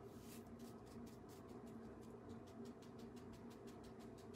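Faint, quick scratchy strokes of a cheap flat paintbrush dabbing acrylic paint onto a wooden surfboard cutout, about five or six strokes a second.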